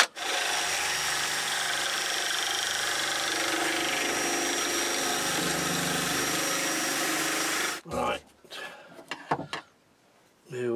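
Cordless drill running steadily for about eight seconds, spinning a wooden blank through a dowel-making jig so that its cutter shaves the wood round into a dowel. The drill then stops, and a few light knocks follow as it is set down.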